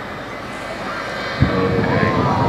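Jet engine of a jet-powered school bus heard at a distance as a steady rush, turning into a louder, deeper rumble about one and a half seconds in.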